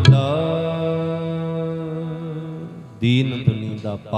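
A male kirtan singer holds one long sung note over harmonium, the note slowly fading over about three seconds. Near the end a new vocal phrase begins.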